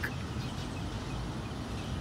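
Steady, featureless outdoor background noise with a low hum and no distinct events.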